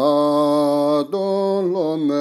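Tibetan Buddhist prayer chant to Tara: one voice holding long melodic notes, breaking off briefly about a second in and resuming with a wavering, sliding pitch.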